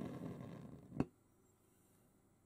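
Small propane burner's gas flame hissing faintly and dying away as the gas is shut off at the cassette gas cartridge's valve, ending in one sharp click about a second in.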